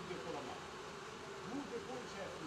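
A man talking, indistinct, over the steady hum of running water-treatment plant equipment.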